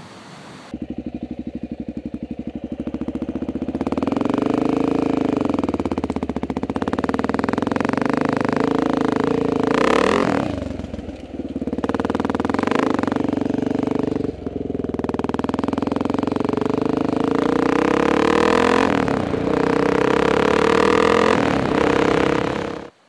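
Honda XR600R single-cylinder four-stroke dual-sport motorcycle engine running while riding along a trail, its revs rising and falling with the throttle. It comes in about a second in, grows louder a few seconds later, and eases off briefly about ten seconds in and again around fourteen seconds before pulling up again.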